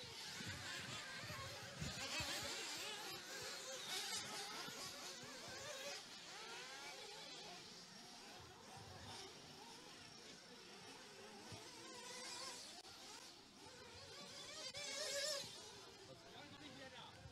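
Several 1:8-scale off-road RC cars racing, heard faintly from a distance: a high-pitched motor buzz that keeps rising and falling in pitch as the cars accelerate and brake, slightly louder near the end.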